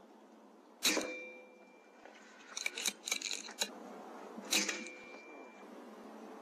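Two shots from an Air Arms S510 .22 PCP air rifle about four seconds apart, each a sharp crack followed by a brief ringing tone. Between them comes a quick run of clicks as the side-lever action is cycled to chamber the next pellet.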